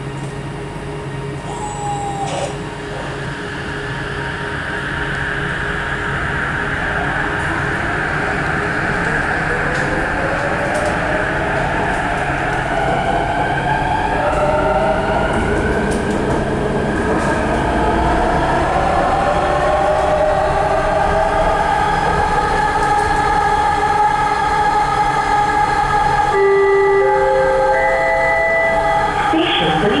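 Bombardier ART Mark III metro train accelerating away from a station, heard from inside the car: the linear induction motor's inverter whine climbs in pitch in several tones over a rumble that grows louder as speed builds. Near the end a short stepped chime sounds, just before the next-station announcement begins.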